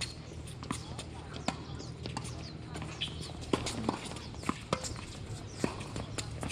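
Tennis ball being struck by rackets and bouncing on a hard court during a doubles rally: a series of sharp pops spaced about half a second to a second apart, over a steady low hum.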